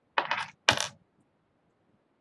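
A brief clatter of small hard objects in two quick bursts within the first second, the second louder and brighter.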